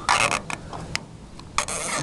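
Flat screwdriver turning an adjustment screw on a VW 34 PICT-3 carburetor: two short scraping rasps, at the start and near the end, with a couple of light clicks between.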